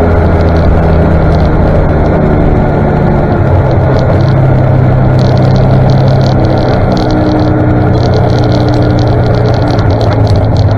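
1959 Daimler Ferret armoured scout car's Rolls-Royce six-cylinder petrol engine running at low road speed, heard from on board, its note stepping up slightly a couple of seconds in and then holding steady.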